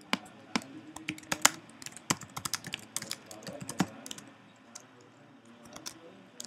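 Typing on a computer keyboard: a quick, irregular run of key clicks that thins out after about four seconds.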